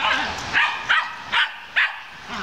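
A dog barking repeatedly, about five sharp barks at roughly two a second.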